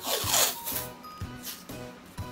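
Brown kraft paper tape pulled off its roll: a loud rip in the first half second and a softer one about a second and a half in. Background music plays underneath.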